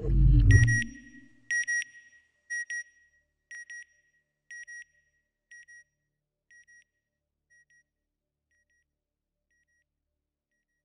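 Electronic sound effect: a low whoosh whose pitch falls, then a high double beep. The beep repeats about once a second and grows fainter each time, like a signal echoing away, until it dies out about eight seconds in.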